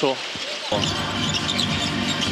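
Game sound from an indoor professional basketball arena: a ball dribbling on the hardwood court amid crowd noise. It cuts in abruptly under a second in.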